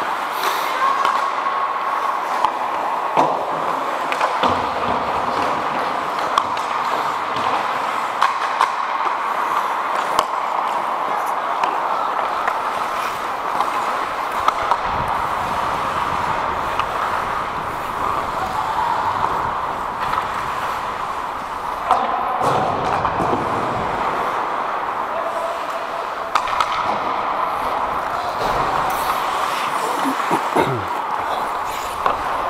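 Ice hockey play heard from on the ice: a steady scrape of skate blades on the ice, broken every few seconds by sharp clacks of sticks and puck, with indistinct players' voices.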